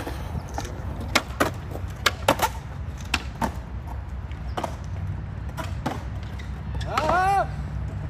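Skateboard rolling on concrete: a steady low wheel rumble with scattered sharp clicks. A short voice exclamation comes near the end.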